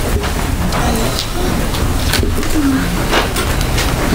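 Steady low hum of a meeting room's sound system, with faint off-mic voices murmuring and a few light clicks.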